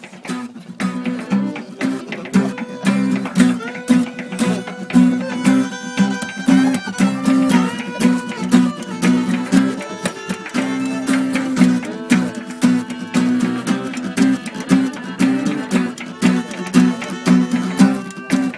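Instrumental break in an acoustic song: a guitar strumming a steady rhythm with a fiddle playing the melody over it, no singing.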